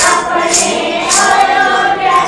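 A congregation singing a Hindu devotional bhajan in unison, many voices together on one melody. A bright percussive beat is struck about every half second, three times.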